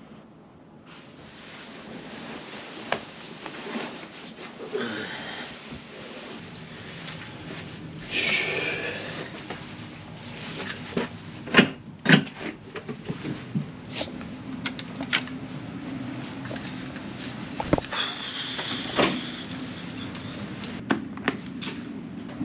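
Clicks and knocks from a hotel room door's lever handle and latch as the door is worked, the two loudest close together about halfway through, among rustling and handling noises.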